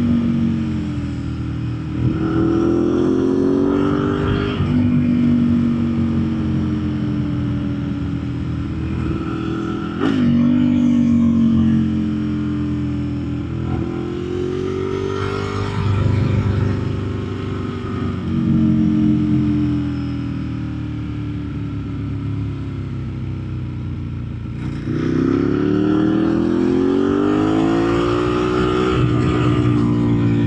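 Ducati 1098S's L-twin engine heard from the rider's seat while riding, its pitch repeatedly falling off and then rising again as the throttle is rolled off and back on through the bends. Sharp surges come about 2, 10, 16 and 25 seconds in.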